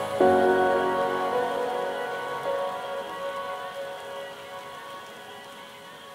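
Background music: a held chord struck just after the start, slowly fading away over a soft hiss.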